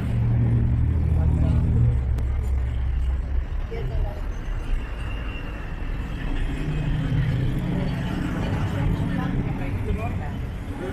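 Outdoor street-market ambience: scattered crowd chatter over the low rumble of a vehicle engine, which is loudest in the first few seconds, fades, and swells again near the end.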